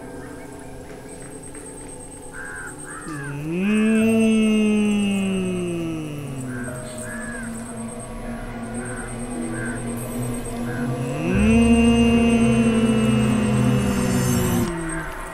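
Eerie background music: a deep gliding tone swells up about three seconds in and slowly sinks away, then swells again near the end and holds. Between the swells come short bird calls repeated every half second or so.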